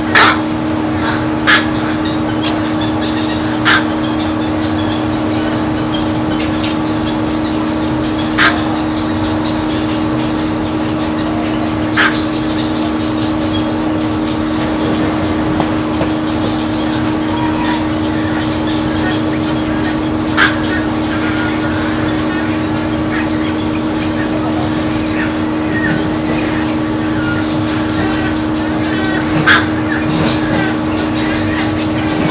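Outdoor ambience at a swamp: a steady low hum over continuous background noise, with a short, sharp bird call every few seconds.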